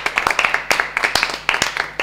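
A small group of about six people applauding: quick, uneven hand claps.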